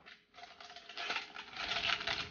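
Aluminum foil crinkling and rustling as it is wrapped around a cardboard tube. It starts faint and grows louder from about a second in.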